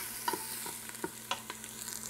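Sliced onion and garlic sizzling in olive oil in a stainless steel Instant Pot insert on sauté high, stirred with a wooden spoon that knocks against the pot now and then in short clicks.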